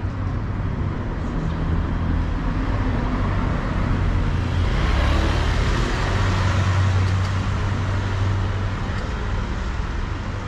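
Road traffic passing close by: cars and a motorcycle driving along the street, a low engine rumble throughout that swells to its loudest about halfway through as they pass.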